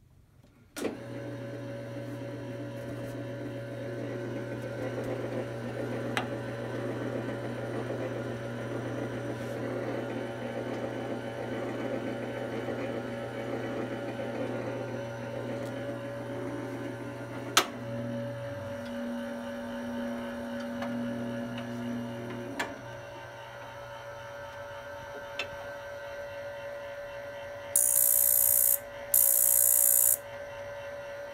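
Probat BRZ 2 gas sample coffee roaster switched on about a second in: its motors and blower start at once and run with a steady electric hum, the low part of the hum dropping out and changing pitch a few times past the middle, with a few sharp clicks. Near the end, two loud bursts of high hissing as the gas burners' spark igniters fire.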